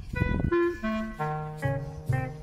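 Background music: a slow melody of held notes, joined about a second in by a sustained low bass note.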